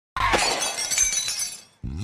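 Glass-shattering sound effect: a sudden crash with ringing, tinkling shards that fade away over about a second and a half. A pitched sound starts just before the end as the music track comes in.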